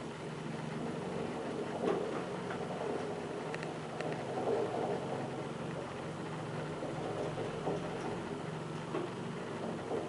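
ASEA high-rise traction elevator car travelling in its shaft, heard from inside the car: a steady hum with rushing ride noise and a few faint clicks.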